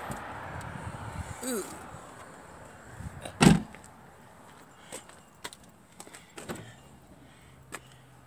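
A vehicle door shut with a single loud thump about three and a half seconds in, followed by a few faint clicks.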